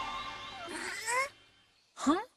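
A baby triceratops cartoon creature gives one short, high cry that rises in pitch, like a kitten's mew, about a second in. Background music fades out under it, leaving near silence.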